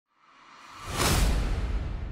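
Whoosh sound effect for an animated logo reveal: a rushing swell with a deep low rumble beneath it, building to a peak about a second in and then slowly dying away.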